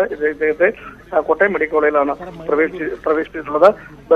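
Speech only: a man talking over a telephone line.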